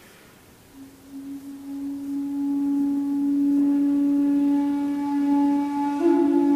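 Kyotaku, the Zen end-blown bamboo flute, playing a single long low note that enters about a second in, swells, and is then held steady.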